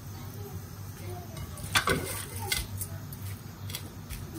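A dough ball pressed flat by hand on a plastic-wrapped plate, with a few light clicks of plate and hand against the counter, the sharpest a little under two seconds in.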